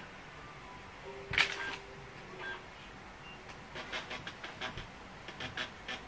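Light clicks at a laptop: one sharp click about a second and a half in, then a quick, irregular run of small clicks in the last couple of seconds.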